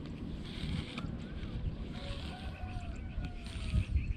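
Wind buffeting an action camera's microphone with a rough, uneven rumble, and a few faint bird whistles rising and falling around the middle.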